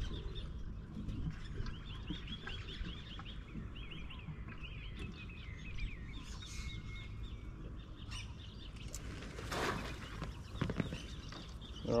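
Birds chirping in quick runs of short high notes over a low steady rumble, with a short rush of noise about ten seconds in.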